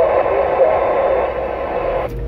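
Uniden Grant XL CB radio receiving a weak station: a faint voice half-buried in steady static from the radio's speaker. The static cuts off suddenly at the end as the incoming transmission drops.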